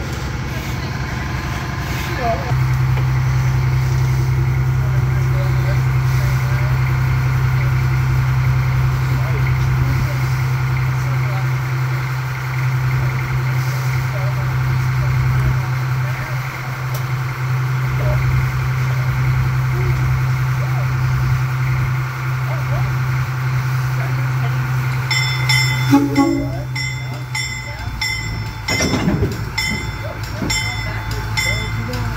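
Diesel locomotive engine running with a steady low hum, stepping up a little over two seconds in and easing off near the end. Near the end a regular repeated ringing sounds, about twice a second.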